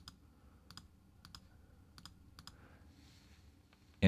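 Faint computer mouse clicks, five or six of them at uneven intervals, over near-silent room tone.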